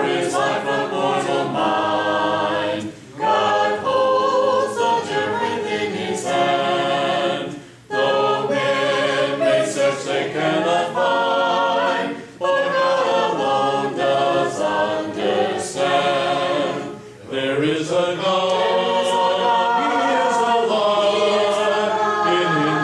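A congregation singing a hymn a cappella, with the song leader's voice among many singing together in harmony and no instruments. The singing goes in long phrases, broken by a brief pause for breath about every four to five seconds.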